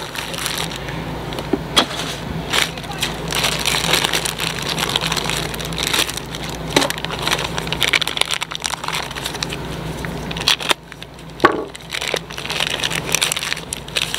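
Plastic bag crinkling and rustling with a cardboard box being handled, many small sharp crackles throughout, as a new part is unwrapped.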